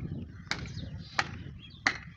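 Hand hammer blows, three sharp strikes about two-thirds of a second apart in a steady rhythm.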